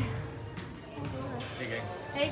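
Indistinct background voices in a large indoor space, with a few low thuds.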